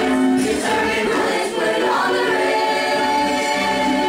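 A show choir of mixed voices singing in harmony, moving through a phrase and then holding chords in the second half.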